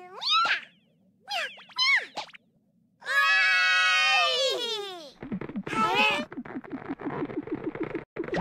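Cartoon kittens' voices: a few short, high meow-like cries that slide up and down, then a long, happy cheer of "Yay!" about three seconds in. From about five seconds a fast ticking sound runs under one more short cry.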